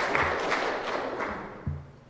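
Audience applause in a hall, tapering off over about a second and a half, followed by a single low thump near the end.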